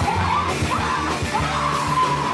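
Live punk rock band playing: electric guitars and drums with a woman's vocals over them.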